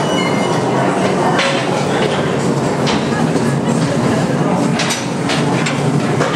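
Small underground mine rail cars running on the track, a steady loud rumble with irregular sharp clicks and clanks from the wheels and couplings, and voices underneath.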